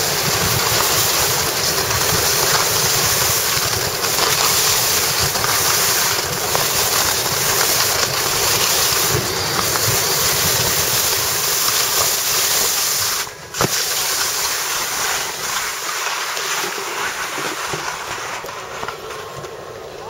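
Wind rushing over the microphone and skis hissing over soft, slushy spring snow during a fast downhill run: a steady, loud rush of noise. It drops out briefly about two-thirds of the way through and eases off near the end.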